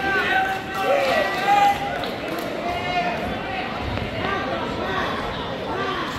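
Several spectators and coaches talking and calling out over one another in a school gym, their voices overlapping throughout.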